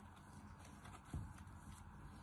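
Quiet handling of kinetic sand and a plastic sand mold: faint crumbling and small clicks, with one dull thump about a second in.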